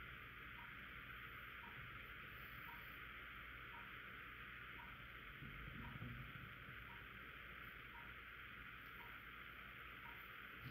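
Near silence: steady room hiss with a faint tick about once a second, and a soft low rustle about halfway through.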